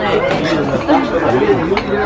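Indistinct chatter of several voices talking at once, with a light click near the end.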